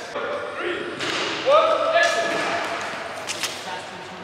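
A person's voice: a long shouted cry that rises and is then held for most of a second, starting about a second and a half in, with a few short knocks near the end.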